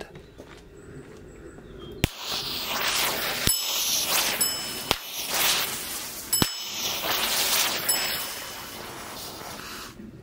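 Four standard e-matches firing one after another, about a second and a half apart, each a sharp pop, and the green visco safety fuse they light hissing as it burns. Two short ringing dings sound among the pops.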